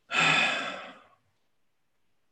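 A man's long sigh: one breath let out, starting sharply and fading away over about a second.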